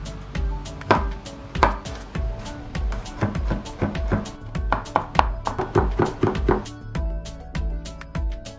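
A chef's knife chopping garlic on a wooden cutting board, heard over background music with a steady beat. Two single cuts through the cloves come in the first two seconds, then a quick run of mincing strokes, about three or four a second, that stops near seven seconds in.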